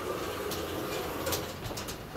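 KONE elevator's automatic stainless steel car and landing doors sliding open. The door operator gives a steady hum, with a few clicks in the second half as the panels travel to fully open.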